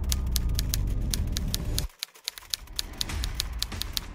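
Typewriter sound effect: a fast, even run of key clicks, about eight a second, as a caption is typed out letter by letter. A deep low drone under it cuts off suddenly about halfway through.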